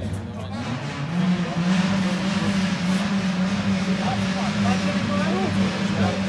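A rally car's engine running steadily at a constant speed close by, getting louder about a second in and then holding level, with people talking faintly underneath.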